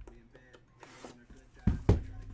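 Gold aluminium trading-card briefcase being shut: two loud clunks in quick succession near the end as its lid and latches knock closed.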